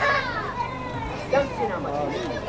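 Indistinct chatter of several voices, including high-pitched children's voices.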